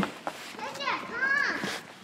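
Children's voices calling out, with high, drawn-out calls in the middle, as of children playing; a short knock at the start.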